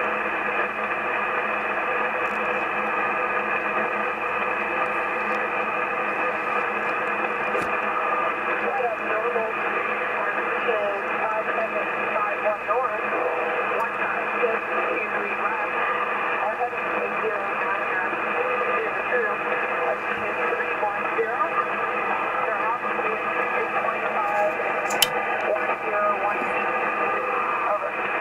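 Drake R8 communications receiver's speaker giving steady shortwave static confined to a narrow voice band, the open channel between transmissions, with weak, unreadable voice traces in the noise at times. A sharp click comes near the end.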